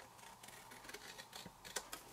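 Large scissors cutting through cardstock: faint short snips and clicks, closer together near the end.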